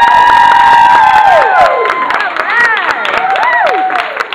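Several children shouting and cheering together: a long, high, held cry that falls away after about a second and a half, then shorter rising-and-falling shouts, with a few scattered claps.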